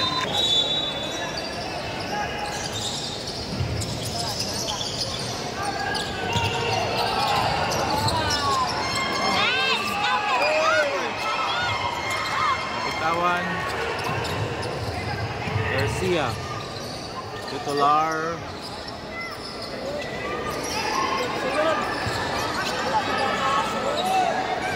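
Basketball being dribbled on a hardwood gym court, with sneakers squeaking in short chirps, in a cluster near the middle and again a few seconds later, over the chatter of a crowd in a large hall.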